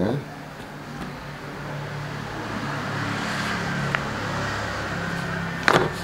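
A low, steady engine hum that swells through the middle and eases off again, with a few sharp clicks of stiff paper being handled a little before the end.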